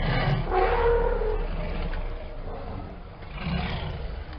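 A tiger roaring as it charges: one long roar at the start and a second, shorter one about three and a half seconds in.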